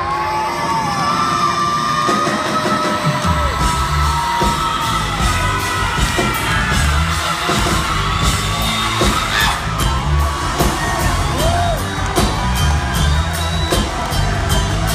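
Live rock band playing loud: a male singer's voice and sustained electric guitar lines over a drum kit beat.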